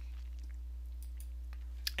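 Low, steady electrical hum from the recording setup, with a few faint clicks, among them a mouse click choosing a menu item.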